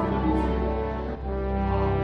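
Cologne Cathedral's large bronze bells ringing, heard in the bell chamber: a dense, sustained hum of many overlapping tones, with a brief dip a little past a second in.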